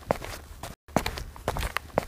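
Footsteps: a quick run of steps, about three or four a second, with a brief break in the middle.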